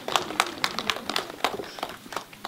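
Scattered applause from a small audience: a handful of people clapping unevenly.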